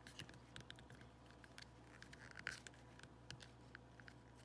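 Faint, scattered clicks and taps of a clear plastic battery pack case being handled, a wire squeezed between its case and lid.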